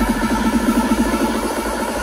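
Electronic dance music from a DJ set played loud over a festival sound system, built on a fast, evenly repeating figure of short plucked synth notes over a steady bass.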